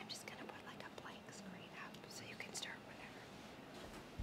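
Faint whispered speech picked up by a microphone, with a few hissing 's' sounds and no full voice.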